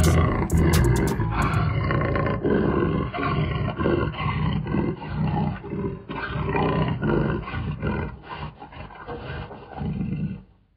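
A big cat's roar played as a sound effect: one long, rough, pulsing roar that slowly dies away.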